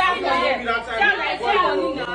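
Several people chattering and talking over each other, a woman's voice among them.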